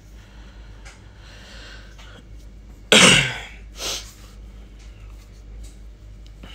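A man coughs: one loud cough about three seconds in, then a smaller one about a second later.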